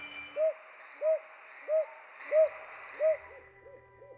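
A bird hooting: a run of short, rise-and-fall hoots about two-thirds of a second apart, quickening and fading near the end, over a steady hiss with faint high chirping.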